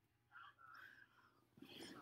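Near silence with a faint, hushed human voice, a little louder near the end.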